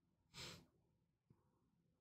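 A single short breath, about half a second in, lasting under half a second, followed by a faint click; the rest is near silence.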